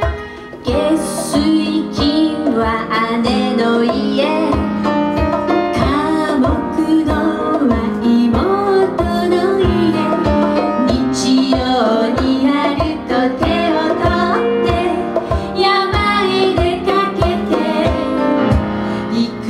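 Two women's voices singing a song together over live band accompaniment of piano, violin and percussion, with a steady beat.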